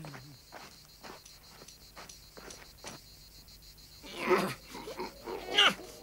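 Faint, quick tapping for about four seconds, then a few short, loud vocal yelps with falling pitch near the end.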